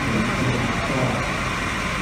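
Steady mechanical hum of a parked fire department mobile command truck left running, over outdoor street noise.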